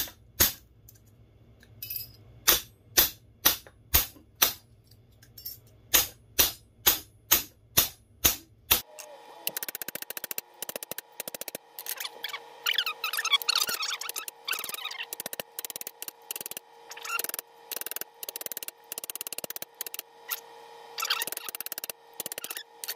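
Ball-peen hammer striking annealed sterling silver spoon ends on a metal bench block to flatten them, sharp metallic blows about two a second in short runs. About nine seconds in, background music with steady held tones comes in, with quicker tapping under it.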